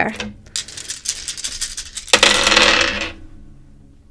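Astrology dice being shaken and rolled: a rattle of many small hard clicks that grows into a louder clatter about two seconds in, then dies away.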